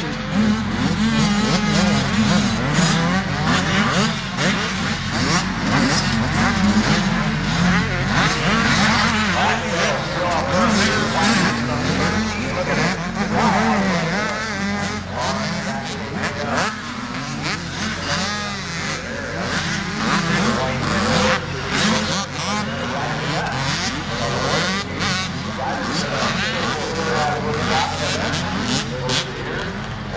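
Several motocross dirt bike engines revving on the track, overlapping, their pitch rising and falling without a break as riders throttle on and off over the jumps.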